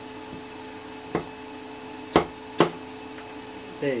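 Three sharp knocks of a scraper against a resin 3D printer's build plate while a resin print is pried off, over the steady hum of the Elegoo Mars printer's fan.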